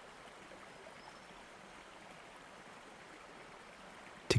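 Faint, steady running-water ambience, like a stream or falls, under a pause in the narration.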